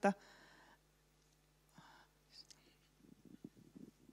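A mostly quiet hall after a voice stops, with faint whispering about two seconds in and soft, irregular rustling in the last second.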